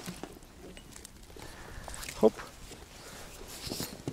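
A small perch splashing at the surface as it is scooped into a landing net, with water running off the mesh as the net is lifted near the end.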